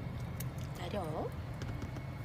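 Car cabin noise: a steady low engine and road rumble, with a short voiced "eu-a" exclamation about a second in.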